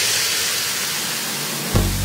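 Hardcore electronic dance music in a breakdown: the bass drops out under a hissing white-noise sweep, then the deep bass and kick come back in near the end.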